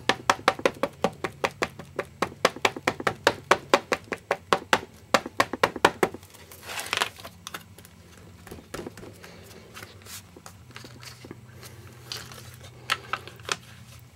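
Ink pad dabbed rapidly against a stamp, a fast run of sharp taps at about five a second for six seconds, followed by a short scuff as the stamp positioning tool's hinged door is closed. Then quiet rubbing and a few soft clicks as a hand presses the stamp down through the closed door.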